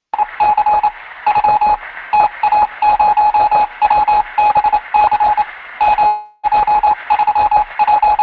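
Morse code: a steady beep keyed on and off in short and long pulses over a hiss, with a brief break about six seconds in.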